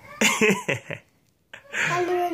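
A young boy's short, choppy burst of vocal sound, not words, followed by a moment of complete silence just after a second in.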